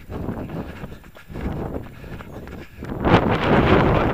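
Wind buffeting the microphone over the footfalls of runners on a path. The wind noise rises sharply about three seconds in.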